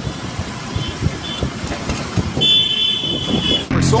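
Road traffic heard from a moving two-wheeler, with a steady rumble of engines and tyres. Vehicle horns toot twice briefly about a second in, then one longer high horn sounds for about a second. Music comes back in near the end.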